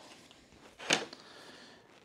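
A single sharp tap about a second in, plastic against the wooden workbench as an acrylic sheet and a plastic speed square are set in place; otherwise quiet room tone.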